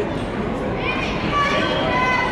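Spectators talking and calling out in a large gym hall, with one voice shouting up and down just under a second in and raised voices held through the second half.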